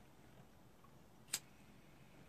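A single sharp click about halfway through, from a lighter being struck to light a tobacco pipe.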